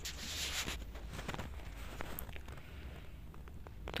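Faint handling sounds of glass bowls and a steel spoon on a table: a short rustle at the start, then a few light clicks, over a steady low hum.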